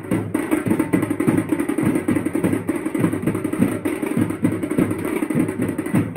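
Fast, dense drumming of many strokes a second, going on without a break.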